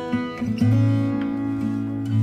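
Background music on acoustic guitar, notes picked in a steady pattern, with a low bass note ringing from about half a second in.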